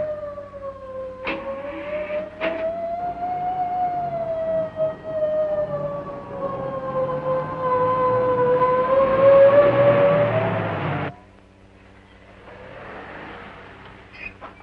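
A police siren wailing, its pitch slowly rising and falling. There are a few sharp cracks in the first few seconds, and a truck's engine grows loud beneath it. Everything cuts off abruptly about eleven seconds in.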